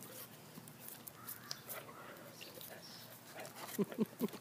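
A dog biting and chewing a frozen ice pop instead of licking it: scattered faint crunches and mouth smacks. A person's voice and laughter come in near the end.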